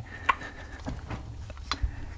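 A few light knocks and clicks as a cast turbocharger housing is handled and turned over, with a low steady hum beneath.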